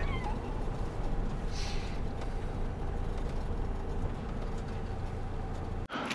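Motorhome's engine and tyres heard from inside the cab as a steady low rumble while it creeps across grass. A short high whine from a dog in the cab fades out right at the start, and the rumble cuts off suddenly near the end.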